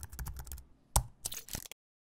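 Computer keyboard typing sound effect: a quick, uneven run of key clicks with one louder click about a second in, stopping abruptly shortly before the end.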